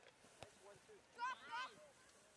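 A short, high-pitched shout, about a second in, over quiet open-air background. A single faint click comes about half a second before it.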